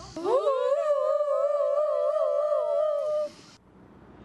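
A person's voice imitating an outdoor tornado warning siren: a wail that rises at the start, then holds with a slight wavering for about three seconds before stopping.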